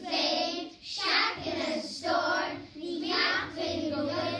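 A group of young children singing together in a chorus, in short sung phrases about once a second.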